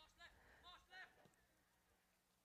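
Near silence, with a few faint, distant voices in the first second.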